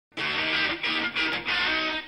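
Short musical intro jingle played in three quick phrases, each separated by a brief dip.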